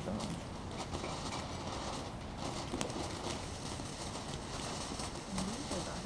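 Ground fountain firework spraying sparks: a steady hiss with scattered sharp crackles, over a low rumble of wind on the microphone.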